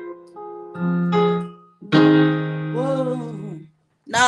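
Piano chords played slowly, each chord struck and left to ring, heard over a video call. A wavering voice hums along briefly over the last held chord before it dies away.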